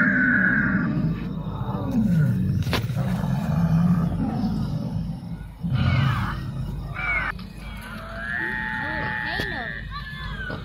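Recorded roar and screech effects from an animatronic pterosaur exhibit: a deep roar under a high screech in the first second, and another high screech near the end.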